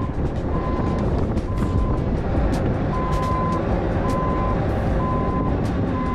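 A heavy machine's engine running steadily while its backup alarm beeps about once a second, with scattered clanks and rattles.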